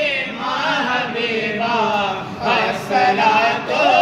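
Voices singing a devotional Urdu song together in a chant-like style, the sung lines wavering and ornamented.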